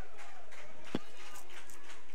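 Open-air stadium ambience, a steady wash of crowd and distant voices, with one short sharp thud about a second in: a soccer ball struck for a long pass.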